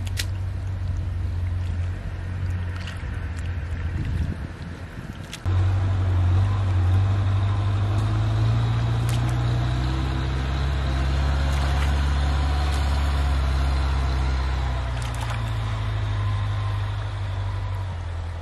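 A steady low motor hum, like an engine running nearby, that fades out briefly around four seconds in and comes back suddenly and louder about five and a half seconds in, with a few faint splashes from hands in shallow water and mud.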